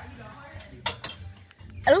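A single sharp click a little under a second in, followed by a few faint ticks, over a low steady hum; a voice starts right at the end.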